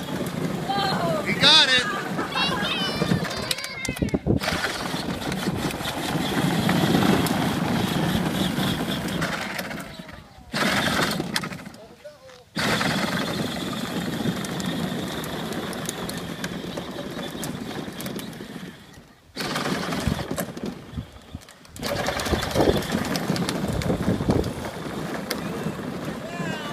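Voices outdoors with a steady background noise, broken by several abrupt short silences where the recording cuts.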